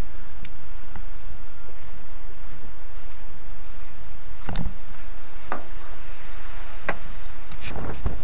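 Steady low rumble of wind on the microphone, with a few light knocks and clicks in the second half.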